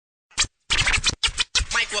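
Turntable scratching in four short, choppy bursts opening a hip hop track, the first about a third of a second in.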